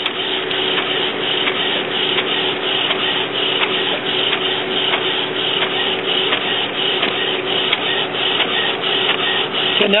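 Epson WorkForce WF-2540 inkjet printer printing a page: the print-head carriage shuttles back and forth with a steady motor whir and a regular stroke about three times a second as the paper feeds.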